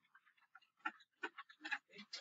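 Faint, irregular ticks and taps of a stylus on a screen while handwriting is drawn, a handful of short clicks mostly in the second half.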